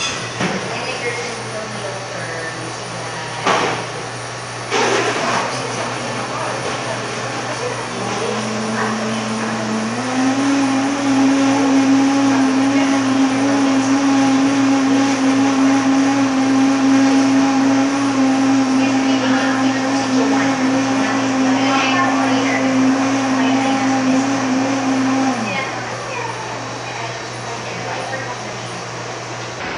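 Electric drink blender at a milk tea counter running for about 17 seconds, starting at a lower speed and stepping up to a higher, steady pitch a couple of seconds after it starts, then cutting off. Two sharp knocks come a few seconds before it starts, over a steady low hum.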